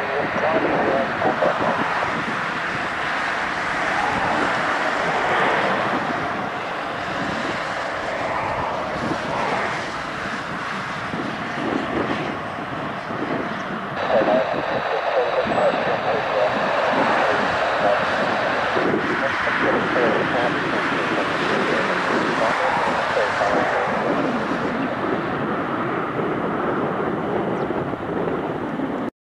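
Cabin noise of a Cessna 172 rolling on the ground, its piston engine and propeller running steadily at low power, with a brief louder surge about halfway through.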